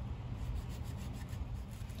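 Knife blade sawing through a thick natural-fibre rope at a taped section, a steady rasping of cut fibres.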